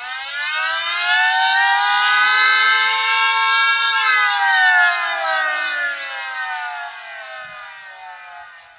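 Emergency siren giving one long, slow wail, rising in pitch for about four seconds and then falling away, signalling that the police are arriving.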